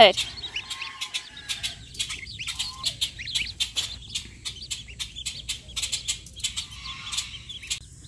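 A brood of two-day-old Welsh Harlequin ducklings peeping continuously: many short, high peeps overlapping one another, with scattered light clicks.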